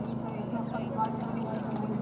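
Ponies cantering on arena sand, their hoofbeats faint and irregular, over a steady low hum.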